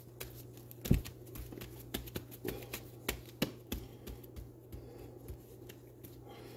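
Gloved hands pressing and smoothing a sanding disc down onto a glued sanding pad on a card backing: scattered light taps, rubs and rustles, with a sharper knock about a second in.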